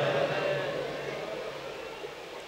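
A man's amplified voice dying away in a long echo through a microphone and loudspeaker system, fading steadily to a faint hiss.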